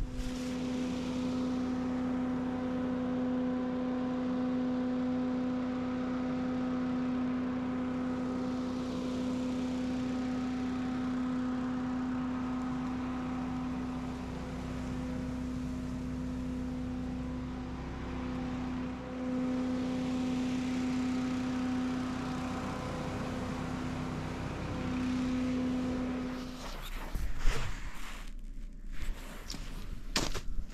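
Leaf blower running at a steady speed, a loud even drone with a few brief dips, blowing leaves and dust. It cuts off about 26 seconds in, and a few sharp knocks follow near the end.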